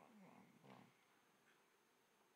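Near silence: room tone, with a faint, distant voice in the first second.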